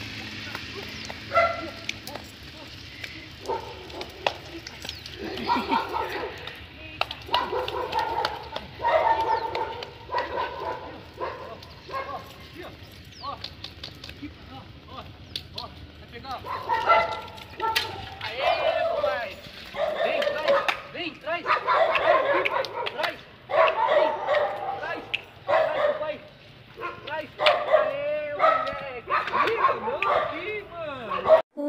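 Young pit bull barking and yipping excitedly in play, in repeated short calls that come more often in the second half.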